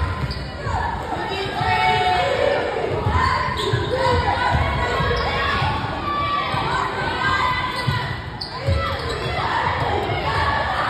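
A basketball being dribbled on a hardwood gym floor in repeated low thumps, with players and spectators shouting over it in the large hall.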